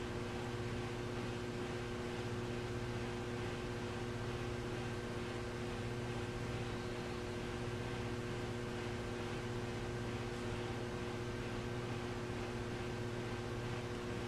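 Electric potter's wheel motor running steadily: a constant hum made of several steady tones over a low even hiss.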